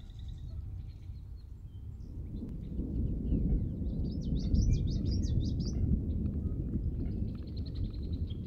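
A field recording of rain, thunder and birds. A low rumble of thunder swells about two seconds in and holds through the middle. Birds chirp over it, with a quick run of high chirps around the middle and a trill near the end.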